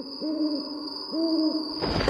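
Owl hoot sound effect: two hoots, each rising and falling in pitch, about a second apart, over a thin steady high tone. A loud noise swells in just before the end.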